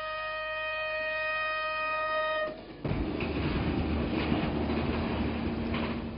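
Train horn sounding one long, steady blast that cuts off about two and a half seconds in, followed by the rumble of the train running along the track.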